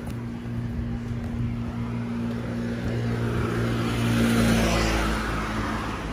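A road vehicle passing by: a low engine hum and tyre noise that grow louder to a peak about four and a half seconds in, then fade.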